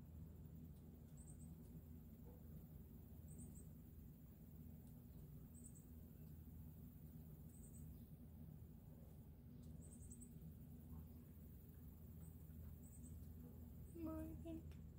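Near silence: room tone with a low steady hum and faint high-pitched chirps recurring about every two seconds.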